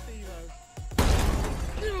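Something struck in a baseball swing breaking with a sudden crash and shattering, about a second in; a man then cries out 'gawd' in a falling voice near the end.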